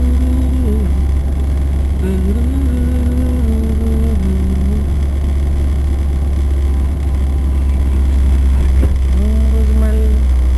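Steady low rumble of a car's engine and road noise heard inside the cabin as it drives slowly. Over it, a person hums a tune in a few short phrases, near the start, from about two to five seconds in, and again near the end.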